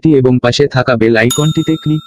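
A bright bell-chime 'ding' notification sound effect strikes once, about a second and a quarter in, and rings on steadily for about a second, over a synthesized narrating voice.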